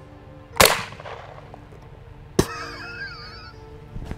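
A single 12-gauge shotgun shot, fired with a light low-brass novelty shell loaded with small rubber ducks and plastic pellets, about half a second in: one sharp crack with a short echoing tail. About two seconds later comes a second, quieter sharp click, followed by a brief warbling high tone.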